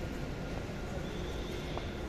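Steady background hum and murmur of an indoor shopping mall, with a faint high tone in the second half.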